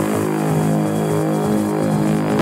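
House music in a breakdown: the kick drum and bass have dropped out, leaving a held, droning low synth chord.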